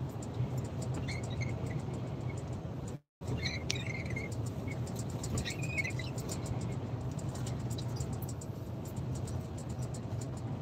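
Steady low drone of engine and road noise inside a moving truck's cab at motorway speed. The sound cuts out completely for a moment about three seconds in.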